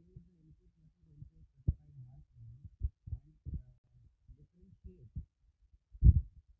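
A man's voice talking, heavily muffled and choppy, with only the low part of the voice coming through and a few sharp pops.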